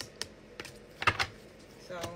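A deck of tarot cards being handled over a glass tabletop: a few sharp clicks and taps, the loudest a quick cluster about halfway through.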